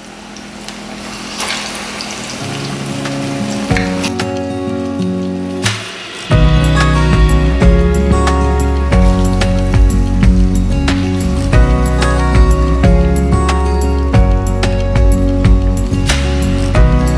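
Plantain slices sizzling as they deep-fry in hot vegetable oil. About two and a half seconds in, background music fades in, and from about six seconds a steady, louder beat takes over and covers the frying.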